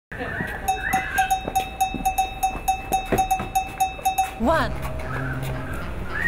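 A bell-like ringing, struck in an even rhythm about four times a second, that stops about four seconds in. Then a child says "One".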